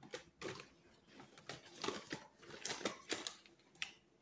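Irregular crackling rustles and small taps of fingers working grease into dry hair and scalp right against the phone's microphone.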